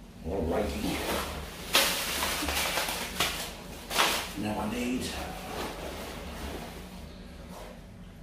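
Rustling and handling noise as items are moved about by hand, with sharp knocks about two, three and four seconds in.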